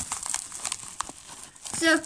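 Yellow padded mailer envelope rustling in quick, sharp crackles as it is handled and pulled open along a fresh scissor cut.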